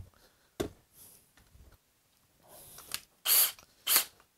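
Handling sounds of cordless drills being set down and picked up: a short knock, a few faint clicks and rustles, then a louder short hissy sound near the end. No drill is running.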